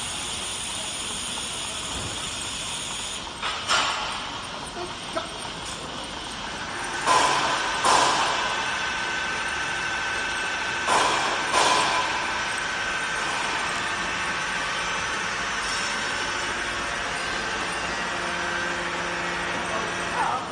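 Automatic linear weight filler for 20 L oil bottles running: a steady machine noise, broken by short bursts of hiss, one about three and a half seconds in and then two pairs around seven and eleven seconds in.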